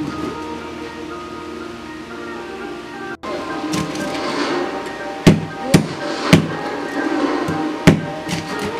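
Background music throughout. From about three seconds in, a large kitchen knife chops through fried pork onto a plastic cutting board, with four sharp chops.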